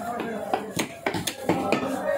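A heavy cleaver chopping fish on a wooden chopping block: about five sharp knocks at an irregular pace.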